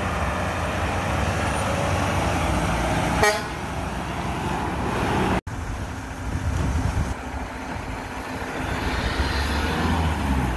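A Mack garbage truck's diesel engine running as it drives up, with one short horn toot about three seconds in. The sound drops out for an instant just after five seconds.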